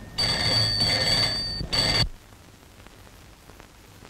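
Desk telephone bell ringing: one long ring of about a second and a half, a brief pause, then a short second ring that cuts off suddenly as the receiver is picked up.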